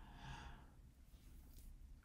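Near silence: room tone, with a faint breath or exhale in the first half second.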